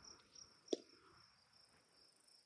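Faint, steady, high-pitched trilling of insects in grass, with a single sharp click about a third of the way in.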